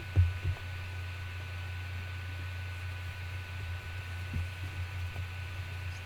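Steady low electrical hum and hiss with a faint high tone held above it; a brief soft sound just after the start and a faint tap a little past the middle.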